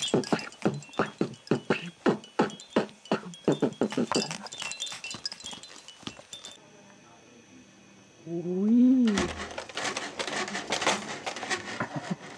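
Baby laughing in quick, rhythmic bursts that fade out after about four seconds. After a short quiet stretch comes a single rising-and-falling baby vocal sound, followed by light clicking and clattering.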